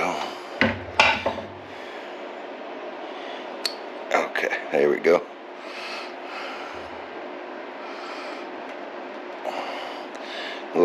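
Metal engine parts being handled during reassembly: a few clinks and knocks in the first second and again around four to five seconds in, with some rubbing, over a steady faint hum.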